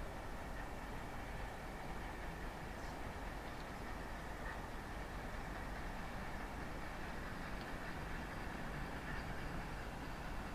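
A distant train approaching, heard as a steady low rumble with no distinct beats.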